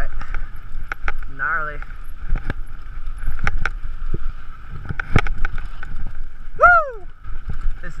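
Mountain bike rolling fast down a rocky dirt singletrack: the tyres run over dirt and stones while the bike clatters with sharp knocks over bumps. The rider lets out short wordless whoops about one and a half seconds in and again near the end.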